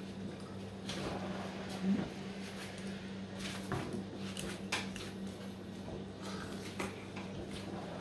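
Light clicks and taps of a metal spoon against the shell of a boiled balut duck egg as it scoops into the egg, a few scattered ticks over several seconds, over a steady low hum.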